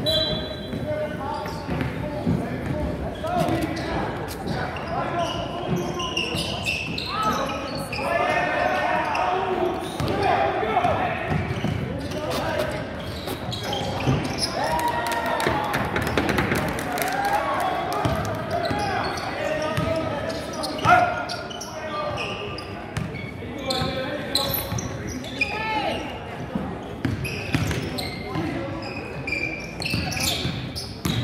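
A basketball being dribbled on a hardwood gym floor, the bounces echoing in the hall, under a steady mix of players' and spectators' voices. One sharper, louder knock comes about two-thirds of the way through.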